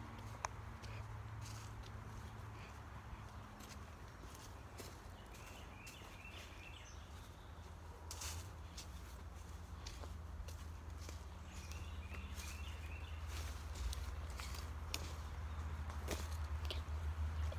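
Footsteps crunching through dry fallen leaves on a woodland dirt trail, over a steady low rumble, with a few short bird chirps now and then.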